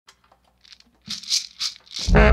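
Short bursts of rattling, about three a second, faint at first and growing louder about a second in.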